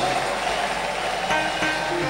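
Music from a church band playing under the noise of a large congregation applauding, with a few faint held notes over an even wash of crowd noise.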